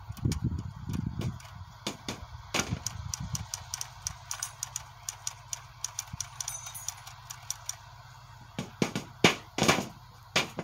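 Irregular sharp taps and knocks from hands working an object on a small tabletop, with a few louder strikes near the end and a brief ringing tone a little past halfway, over a faint steady low hum.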